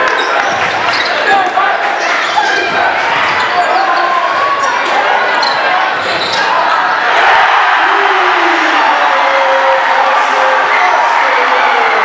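Live basketball game sound in a gym: a ball dribbled on a hardwood court with short sharp bounces over a chattering crowd. About seven seconds in, as a shot goes through the hoop, the crowd noise grows louder and steadier.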